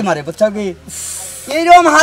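A man's voice speaking in short phrases, broken about a second in by a brief hiss lasting about half a second, before the talk resumes.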